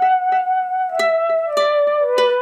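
Background music: a plucked-string melody over a held note that steps down in pitch.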